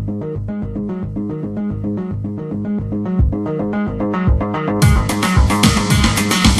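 Intro theme music: a bass and guitar riff over a steady beat, with drums and cymbals coming in louder near the end.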